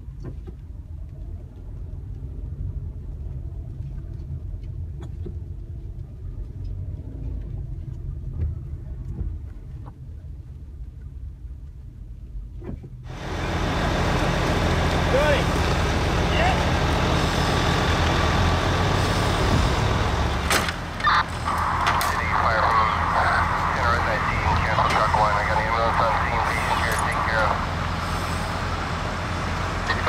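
A vehicle engine running with a steady low hum. About thirteen seconds in, the sound abruptly turns much louder and wider-ranging, with voices talking over it.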